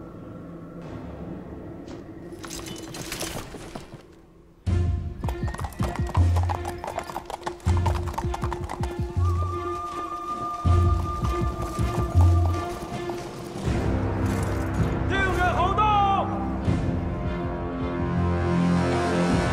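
Horses' hooves clip-clopping as mounted riders arrive, under a dramatic score with a steady low beat that comes in suddenly about four and a half seconds in. A horse whinnies about fifteen seconds in.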